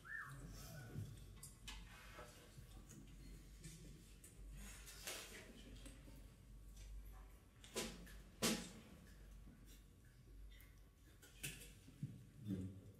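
Near silence: quiet room tone with a low hum and a handful of soft, scattered clicks and knocks, two of them close together about eight seconds in.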